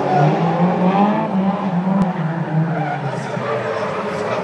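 Competition car's engine revving hard, its pitch rising and falling, with tyres squealing as it slides through a gymkhana cone course. A sharp click about two seconds in.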